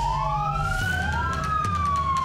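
Police vehicle sirens wailing: two overlapping tones sliding up and down in pitch, crossing each other, over a low steady hum.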